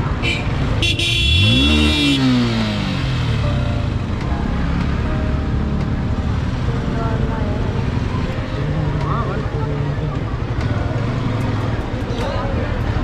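Motorcycle engine in slow, crowded traffic, revving up and back down once about a second in while a horn sounds briefly; after that engines keep running at low speed, with people's voices around.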